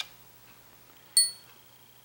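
A steel dowel pin dropped into a guitar's metal stoptail stud well, landing with a single sharp click and a brief high, bell-like ring about a second in.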